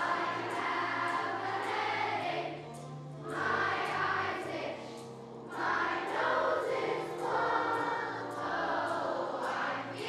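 Children's choir singing in unison in phrases over an instrumental accompaniment with a steady beat.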